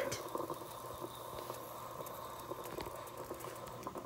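Stovetop moka pot on an electric burner bubbling faintly and steadily as it brews, the hot coffee being forced up into the top chamber.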